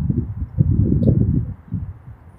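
Strong wind buffeting the camera microphone: an uneven, gusting low rumble that eases off near the end.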